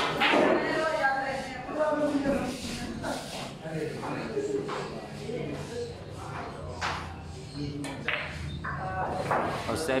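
Murmured talk of onlookers in a large hall, broken by a few sharp clicks of a pool cue striking the cue ball and billiard balls colliding, the clearest about seven and eight seconds in.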